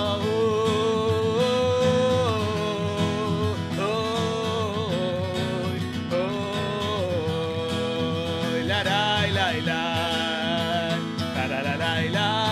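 Live acoustic song: guitar accompanying a singing voice that holds long notes and glides between them.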